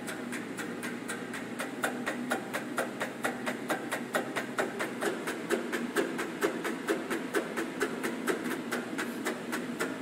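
Maple syrup filter press equipment running, with an even, rapid mechanical clicking about five times a second over a steady low hum.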